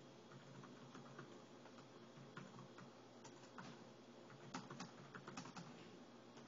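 Faint, irregular typing on a computer keyboard, over a low steady hum.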